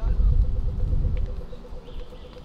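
City street noise at a busy pedestrian crossing: a low rumble, loudest in the first second and then fading. Over it, a pedestrian crossing signal ticks rapidly and steadily, and passers-by can be heard talking.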